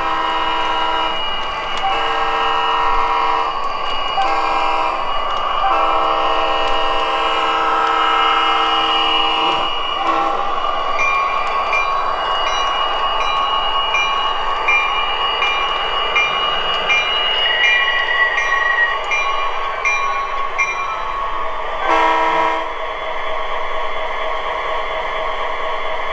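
O scale model EMD SD45 diesel locomotive's onboard sound system sounding its chord air horn in several blasts, the last held for about four seconds. The bell then rings at about two strokes a second for some ten seconds, and one short horn blast comes near the end, all over the diesel engine sound and the running of the model on its track.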